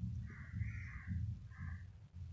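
A crow cawing twice, one longer call and then a shorter one, over a low rumble on the microphone as the phone is carried.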